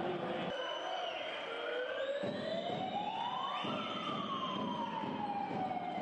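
A siren-like wail over steady crowd noise: its pitch rises for about two seconds to a peak past the middle, then slides slowly back down.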